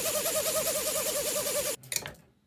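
Two small electric motors spinning propellers on a test frame, a steady whirring hum that wavers quickly over a hiss of air. It cuts off abruptly near the end.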